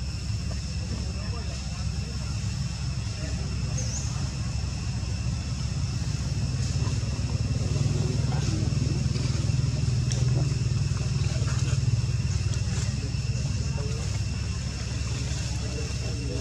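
Steady low rumble that swells a little in the middle, under two steady high-pitched thin whines, with faint indistinct voices.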